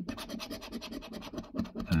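A coin scraping the silver latex coating off a paper scratch card in rapid, repeated strokes.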